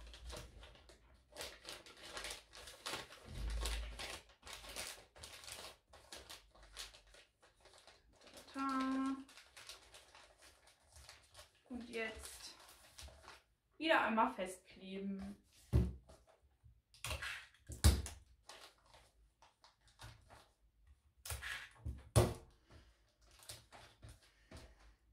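Kraft wrapping paper rustling and crinkling in short bursts as it is folded and creased around a small gift box, with two sharp knocks about two-thirds of the way through.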